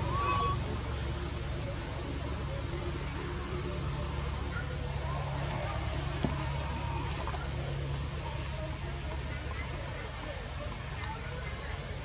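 Outdoor forest ambience: a steady high insect-like drone over a continuous low rumble, with faint distant voices, and one sharp click about six seconds in.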